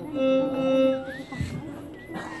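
Violin playing: a held note for about a second, then a thin high note that slides up and wavers.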